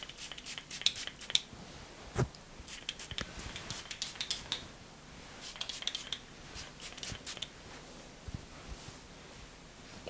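Small hair shine spray bottle being sprayed over the hair in short goes: quiet clusters of small crisp clicks with faint brief hissing, along with light rustling of hair.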